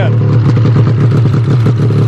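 1999 Ski-Doo MXZ 600's two-stroke twin engine idling steadily and loud, running again now that a failed voltage regulator has been replaced.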